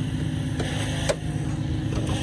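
A vehicle engine idling steadily with a low drone. A single sharp click about a second in, as a car hood is raised.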